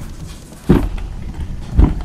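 Two dull thumps about a second apart as a padded, neoprene-covered carrying case is handled and set down on carpet, with handling rustle between them.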